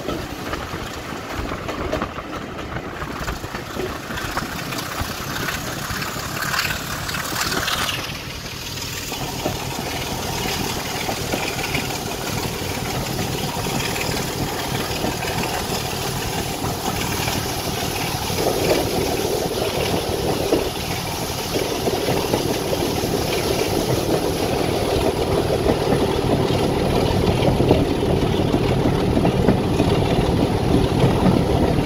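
Class 25 diesel locomotive D7612 running with its Sulzer six-cylinder engine working steadily. The engine note shifts about 8 seconds in, then grows fuller and slowly louder toward the end.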